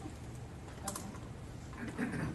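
A few faint taps and one sharp click about a second in, over a steady low room hum.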